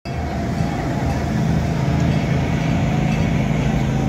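Steady low mechanical hum, like an engine or generator running, over the murmur of a crowd walking outdoors. It starts suddenly and holds level.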